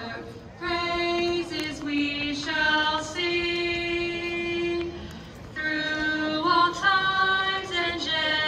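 A woman singing slowly with no words picked out, holding long steady notes. The phrases are broken by short pauses near the start and about five seconds in.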